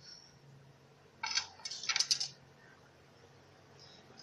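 Metal kitchen knife clinking and clattering against the tray in two short bursts, a little over a second in.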